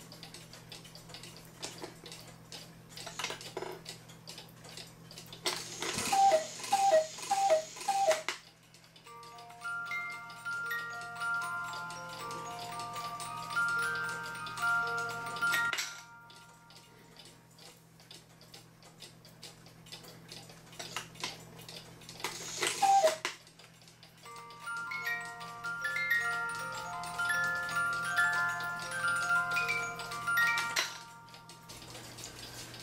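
Black Forest cuckoo clock with a Regula movement and a two-tune music box, ticking steadily, then calling cuckoo four times, each call a falling two-note whistle, followed by a plucked music-box tune. About 22 seconds in it gives a single cuckoo call and the music box plays again, the music now set to play on the half hour as well as the hour.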